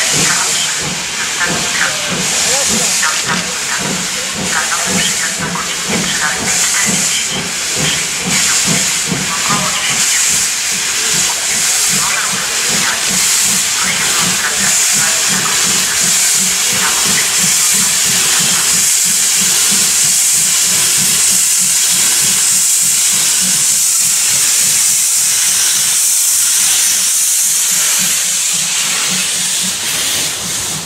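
Ty2 steam locomotive drawing close, hissing loudly from its open cylinder drain cocks over a steady rhythmic exhaust beat. The hiss grows louder from about halfway as the engine comes alongside.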